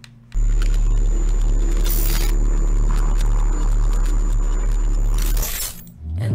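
Cinematic intro sound design under a title animation: a loud, deep bass drone with a thin high tone over it, starting suddenly about half a second in. A whoosh comes about two seconds in and another near the end, then it fades away.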